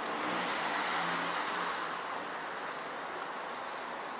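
A car passing on the street, its sound swelling about a second in and then fading into steady outdoor background noise.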